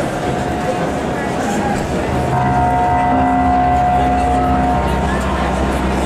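Concert-hall crowd noise between songs. About two seconds in, the band comes in with a sustained chord, a steady drone of several held notes over a low hum.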